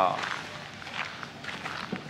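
Footsteps on a gravel path, a soft irregular crunching.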